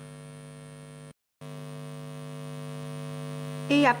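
Steady electrical hum with many evenly spaced overtones. It cuts out completely for a moment a little after a second in, then comes back.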